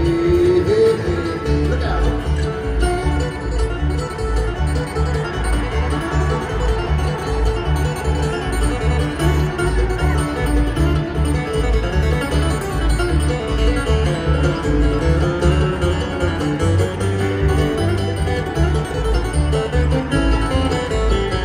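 Live bluegrass band playing an instrumental break: two acoustic flat-top guitars and a five-string banjo picking over an upright bass thumping a steady beat. It is heard as amplified through a large arena's PA.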